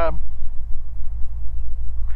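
The two Continental IO-550 six-cylinder piston engines of a Beechcraft G58 Baron running at taxi power, a steady low drone heard from inside the cockpit.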